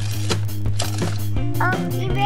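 Plastic gears and ratchet of an Imaginext SpongeBob Glove World playset clicking and rattling as a child pushes a cart along its track, over background music with a steady bass line.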